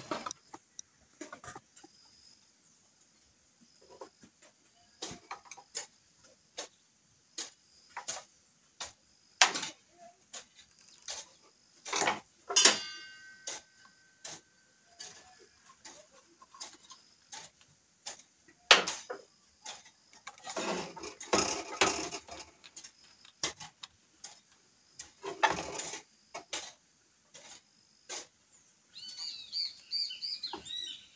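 Irregular clicks, taps and knocks from a screwdriver and the plastic and metal housing of a circular saw being handled while it is taken apart, with short stretches of rustling handling about twenty and twenty-five seconds in.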